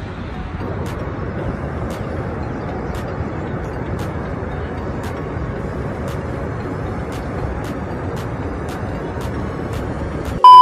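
Steady, unbroken roar of water pouring over Niagara Falls, deep and heavy in the low end.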